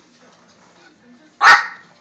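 A dog barks once, loudly, about one and a half seconds in, after a faint stretch.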